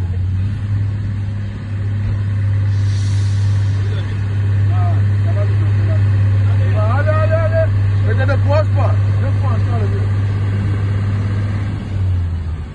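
Heavy container truck's diesel engine running with a steady, deep drone as the truck crawls through deep mud. Short bursts of bystanders' voices come over it in the middle.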